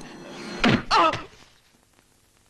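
A loud slam, a single hard impact, a little over half a second in, followed by a brief shouted cry.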